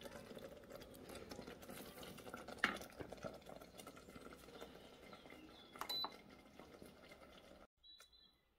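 Faint stirring of a thick sauce with a wooden spoon in an Instant Pot's stainless steel inner pot, with a single knock about a third of the way in. Near the six-second mark the cooker's control panel gives a short high beep.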